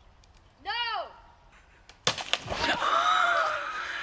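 A single rising-and-falling cry, then about two seconds in a sudden loud splash as a person falls off a log into a shallow creek, followed by water sloshing and splashing as they flounder, with a voice over it.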